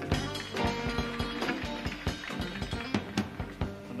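Live band music: a short instrumental break with steady pitched notes and many drum hits.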